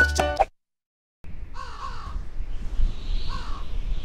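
Upbeat salsa music cuts off abruptly about half a second in. After a moment of dead silence comes a steady wind-like hiss over a low rumble, with two harsh bird caws about a second and a half apart: a desert ambience sound effect.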